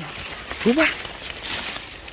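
A man's voice saying one short word over steady outdoor background noise.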